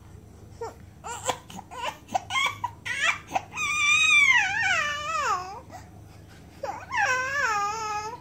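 Three-month-old baby crying a fussy cry for attention: short broken whimpers building into a long wavering wail that falls in pitch, a brief pause, then another wail near the end.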